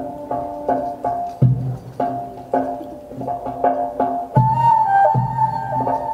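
Traditional Arabic instrumental music of the madih (religious praise) kind: deep drum strokes at uneven intervals under a melody, with a flute line coming in and holding long notes from about four and a half seconds in.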